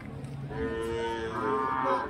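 A cow mooing: one long call that starts about half a second in and rises in pitch toward its end.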